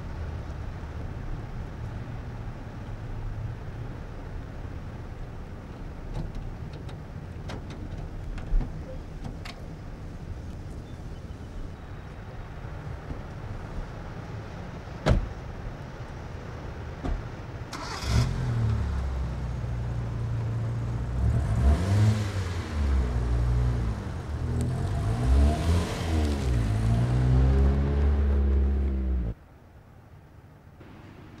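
Car engine starting and being revved, its pitch rising and falling several times as it pulls away, then cut off suddenly near the end. Before it come low outdoor rumble and a few sharp knocks, the loudest about 15 seconds in.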